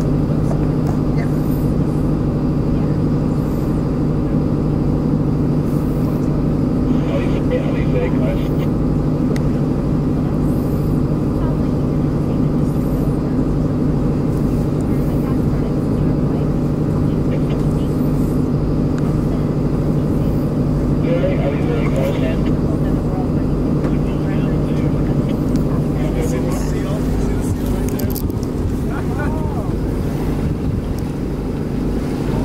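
Steady low drone of a boat's engine running under power, a hum that holds one pitch, while the sails are still furled.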